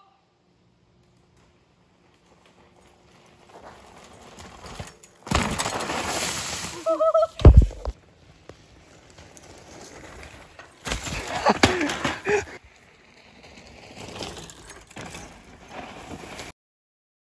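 A cliff jumper plunging into water: a rush of noise, a short yell, then a loud low smack as he hits the water in a belly flop about seven and a half seconds in. About three seconds later comes another loud rush of noise with a voice in it.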